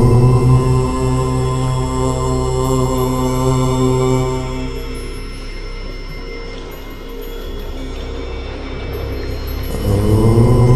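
One long 'Om' chanted in a low voice on a single steady pitch, held about five seconds and then fading out, over a steady background drone. The next Om begins just before the end.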